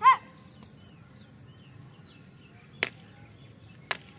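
A single short, loud bird call right at the start. Later come sharp knocks of a wooden martial-arts stick, one a little under three seconds in and one near the end. A faint, steady high chirping continues underneath.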